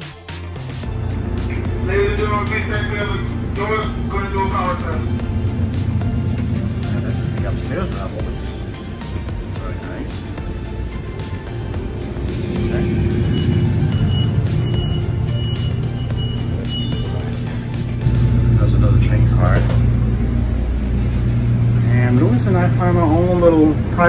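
Steady low rumble of a stationary diesel commuter train, with background music over it. The rumble gets louder about three-quarters of the way through, and brief voices come and go.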